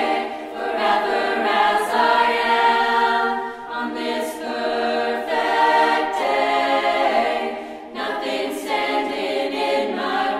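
A high school choir singing in harmony, holding long notes, with short breaks between phrases about four and eight seconds in.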